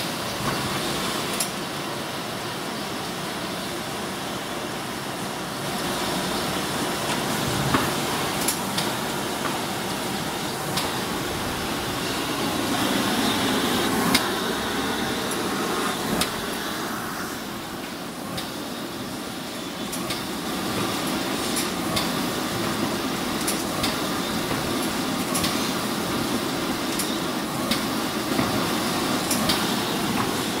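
Semi-automatic flute laminating machine running: a steady mechanical clatter from its rollers and paper feed, with irregular sharp clicks and knocks.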